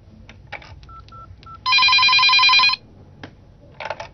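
Three short keypad beeps as a number is dialled. A telephone then rings with a loud, warbling electronic ring for about a second, and a brief noise follows near the end as the call is picked up.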